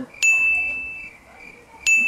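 Two identical high, bright electronic ding sound effects, about a second and a half apart, each a single tone ringing out for under a second: edited-in chimes marking on-screen name captions popping up.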